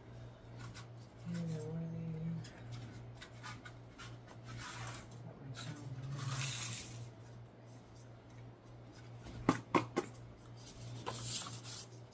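A person rummaging for a paper cup: rustling, then two sharp knocks close together near the end, over a steady low hum.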